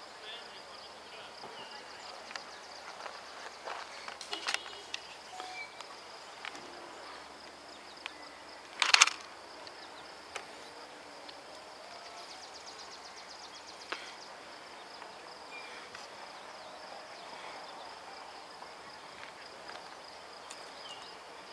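Quiet outdoor ambience: a steady faint high-pitched tone with scattered short chirps, clicks and faint distant voices, and one brief loud noise about nine seconds in.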